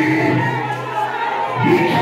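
Group of voices singing a gospel worship song, with a low note held through the first half and a new sung phrase starting near the end.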